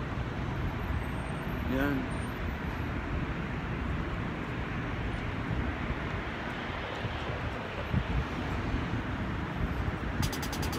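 Steady urban outdoor background of road traffic: an even rushing noise with low rumble, without distinct events.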